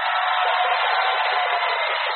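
Large rally crowd cheering and clapping, a steady even roar that comes in abruptly as the speech breaks off and sounds thin, with no bass.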